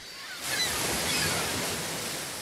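A sound effect of rushing noise, like surf washing in, that swells about half a second in and then slowly fades.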